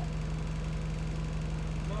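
Bus engine running, heard inside the passenger cabin as a steady low drone with a constant hum.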